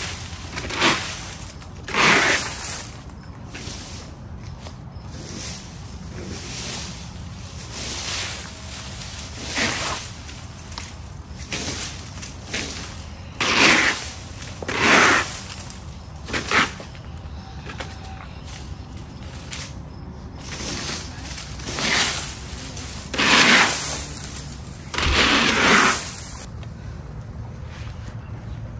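Plastic leaf rake scraping through cut weeds and grass clippings over lawn and concrete. There are about a dozen separate raking strokes, irregularly spaced, with a short lull partway through.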